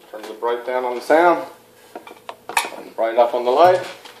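A man's voice in two short wordless phrases, the pitch arching up and down, with a sharp click between them.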